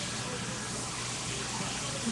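Steady, even hiss of background noise, with no distinct sounds standing out.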